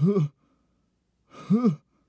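A cartoon character's voice: the tail end of a spoken word, then a pause of dead silence, then a short sigh-like vocal sound about one and a half seconds in, its pitch rising and falling.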